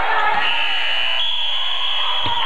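Basketball referee's whistle blown in one long, high, steady blast that steps slightly higher in pitch partway through, over crowd noise in the gym.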